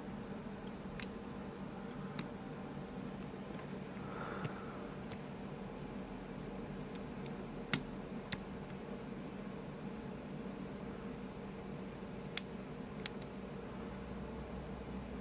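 Lock picking on an ASSA Ruko Flexcore cylinder: a pick and tension wrench working the pins give faint, scattered small ticks, with a few sharper clicks about eight seconds in and again near the end, over a low steady hum.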